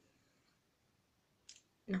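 Near silence with room tone, broken by one short, sharp click about one and a half seconds in, just before a woman says a single word at the end.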